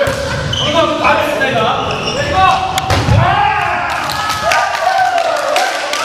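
Volleyball rally in a gymnasium: players shouting and laughing, with the thump of the ball being struck and bouncing on the hardwood floor, and a few sharp smacks in the second half.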